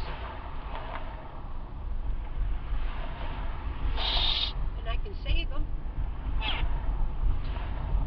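Steady low road and engine rumble inside a moving car's cabin, with a short hiss about halfway through. Faint voices come through briefly.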